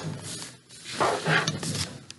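A person's wordless vocal sounds, a brief one at the start and a longer one about a second in.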